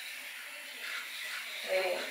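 Battery-powered facial cleansing brush running against the skin with a steady faint buzz. A short vocal sound comes in near the end.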